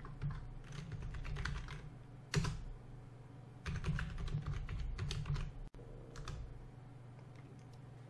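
Computer keyboard being typed on in several short bursts of keystrokes, with pauses between them; the last burst comes about six seconds in.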